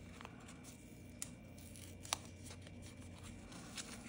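Faint handling of a small paper sticker sheet, fingers picking at its edge and backing, with a few sharp light clicks spread apart over a low steady room hum.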